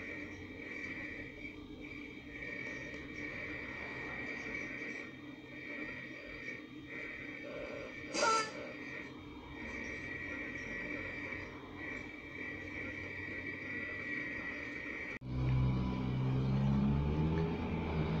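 Audio from a home-built crystal radio tuned between stations after a wave trap coil has nulled a strong station: a faint hiss with a steady high whistle, and one short burst about eight seconds in. About fifteen seconds in the sound changes suddenly and a weak station comes through, louder and lower.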